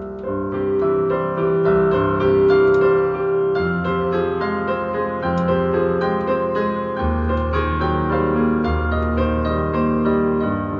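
Solo piano playing a flowing melody over held bass notes, with the bass changing every few seconds. The playing grows louder in the first second or so.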